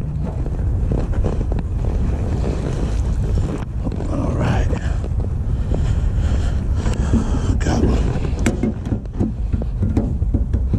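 Wind buffeting the microphone, a steady low rumble, with a few light knocks and handling noises scattered through it.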